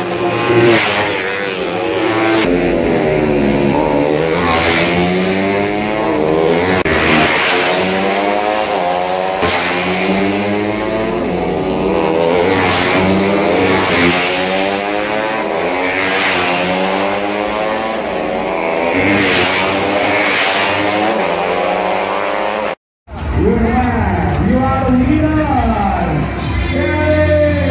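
Honda Sonic 150R race motorcycles' single-cylinder four-stroke engines revving hard as the bikes pass close by, one after another every couple of seconds. Their pitch rises and falls through gear changes. The sound cuts off suddenly near the end, giving way to voices.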